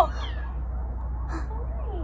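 Tiny kittens mewing faintly: a few short, high, falling cries, over a steady low hum.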